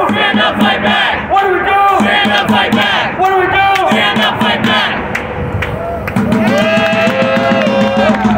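A crowd of protesters chanting a slogan together in a steady rhythm, about one shout a second.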